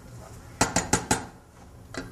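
A wooden spoon knocking against a stainless steel saucepan of white sauce: about five quick knocks in just over half a second, about halfway through.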